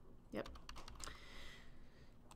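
A few faint keystrokes on a computer keyboard, short separate clicks.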